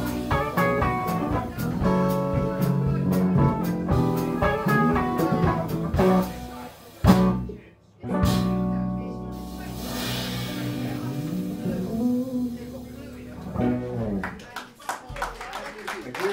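Live blues band playing, with electric guitars and a drum kit. The band stops dead for under a second a little past the middle, then comes back in with long sustained notes and bent guitar notes near the end.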